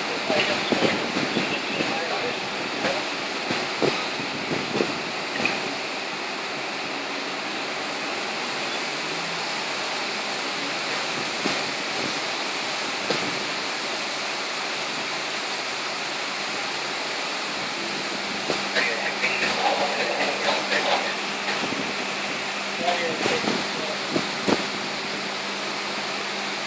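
Heavy rain and strong wind of a microburst storm: a steady, dense downpour, with louder, choppier gusts in the first few seconds and again near the end.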